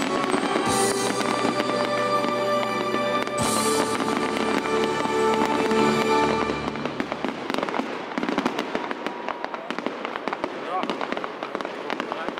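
Fireworks display: bursts and crackling shells going off over music with held tones. About halfway through the music falls back and a dense, rapid crackling of many small cracks takes over.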